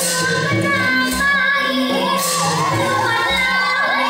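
A woman singing with band accompaniment: sustained instrumental notes throughout, and her wavering, ornamented vocal line comes in about halfway through.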